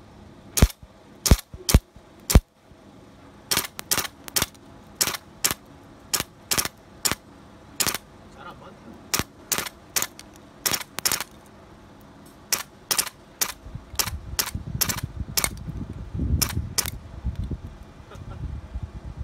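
ARMY G36C gas blowback airsoft rifle firing single shots: about thirty sharp pops at uneven gaps, often about half a second apart, with four strong ones in the first couple of seconds. A low rumble comes in near the end.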